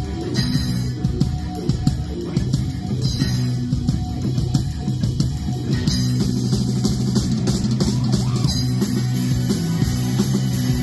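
Live rock band playing loud and without a break: distorted electric guitars over sustained low notes, with drum kit and cymbals.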